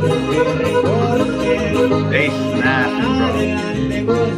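Spanish-language song from the played music video: a man singing over acoustic guitars, with bass notes underneath.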